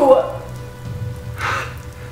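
Steady rain sound effect over a low, steady background music bed. The tail of a woman's dramatic spoken line is heard at the very start.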